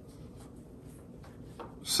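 Faint rubbing and rustling of paper hearts being handled and slid on a wooden tabletop, in a few light scattered touches.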